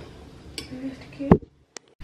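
A metal spoon stirring chocolate ganache in a stainless steel pot, with a few light clicks and one sharp knock a little over a second in; the sound then cuts off abruptly.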